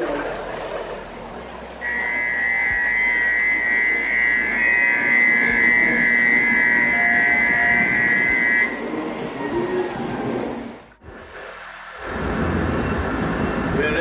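Station ambience with a steady, trilling two-tone electronic chime that rings for about seven seconds, starting about two seconds in, typical of a Japanese railway platform's departure or door-warning signal. Near the end the sound drops out briefly and gives way to a steady rushing noise.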